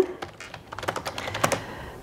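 Typing on a computer keyboard: a quick run of keystrokes, starting about half a second in.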